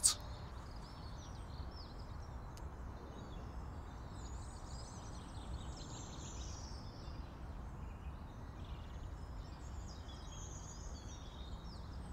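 Faint outdoor ambience picked up by a camera-mounted Sennheiser ME64 microphone in a furry windshield during a silence test: scattered faint bird chirps over a steady low rumble, with one faint click a few seconds in.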